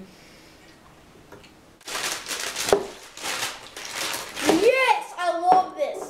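Children's voices making wordless vocal sounds, beginning after a quiet couple of seconds, with breathy noise among them.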